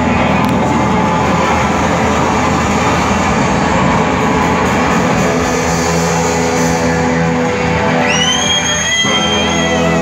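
Live rock band playing an instrumental stretch with electric guitar to the fore, sounding in a large hall. Near the end a high guitar note slides up and is held for about two seconds.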